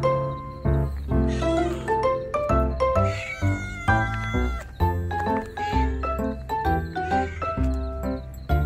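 A domestic cat meowing several times, begging for food, over light, cheerful background music.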